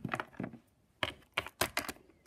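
Small plastic Littlest Pet Shop figurine tapped along a hard floor as it is made to walk: a run of light clicks, a quick cluster at first, then a pause and about five sharper taps near the end.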